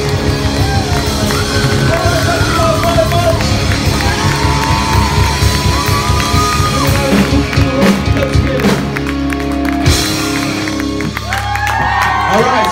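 Live rock band playing loud, with drums, electric guitars, bass and saxophone, and singing over it. About ten seconds in the drumming stops and a chord rings out as the song ends.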